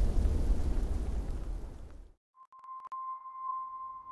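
A low rumbling soundtrack fades away over the first two seconds into a moment of silence. Then a couple of faint clicks and a steady, high electronic tone begin, like a long sonar ping, and the tone holds to the end.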